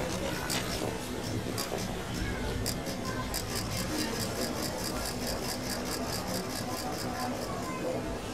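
Pedestrian crossing signal ticking: slow ticks about once a second, then about three seconds in a switch to rapid ticking, about five a second, the signal that the light has turned green for walkers. Street hubbub with voices runs underneath.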